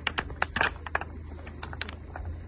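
Computer keyboard being typed on: an irregular run of short sharp key clicks, about five a second, over a steady low hum.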